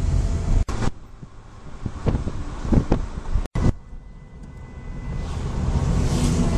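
Road and engine noise heard from inside a car crawling in slow traffic: a low rumble that eases off to a quieter stretch in the middle and builds again toward the end. The sound cuts out completely twice for an instant.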